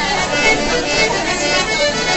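Live folk-style jam: an acoustic guitar played along with a melody instrument holding steady notes, with people's voices in the room mixed in.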